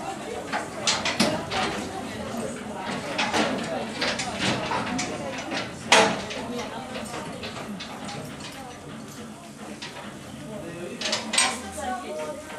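Voices of a group talking, with scattered sharp knocks and clicks such as footsteps on wooden boards; the loudest knock comes about six seconds in.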